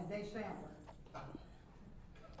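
A pause in speech: a faint voice trailing off at the start, then quiet room tone with a few soft clicks.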